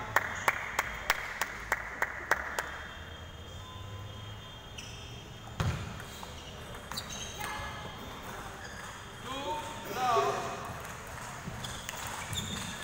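A table tennis ball bounced repeatedly before a serve, about three sharp clicks a second for the first couple of seconds. About halfway through there is a single louder thud, then a few scattered clicks of the ball in play, with voices calling out near the end.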